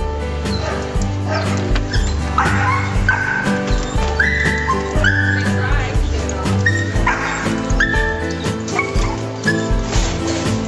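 Pit bull barking and whining in short, high, repeated cries, over background music with a steady beat.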